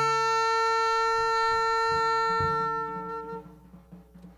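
Saxophone holding one long, bright note that fades out about three and a half seconds in, with a few low double-bass notes underneath, in a live free-jazz trio.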